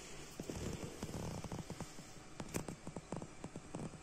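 Irregular crackling and popping of a log fire, coming from the fireplace video playing on a TV, heard faintly over a light hiss. The pops come thicker from about a second in.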